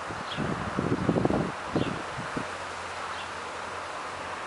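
Leafy tree branches rustling and crackling as a branch holding a honeybee swarm is shaken by hand. The rustling is strongest in the first half and dies down to a faint steady hiss.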